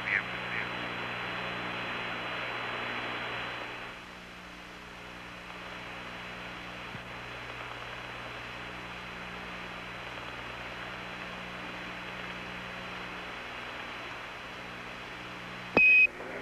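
Open air-to-ground radio channel hissing steadily with a low hum, the hiss dropping a little about four seconds in. Near the end comes one short high beep, a Quindar tone as the ground microphone is keyed.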